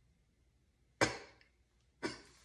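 A single short breathy burst about a second in, a stifled laugh, that fades within a fraction of a second; otherwise near silence.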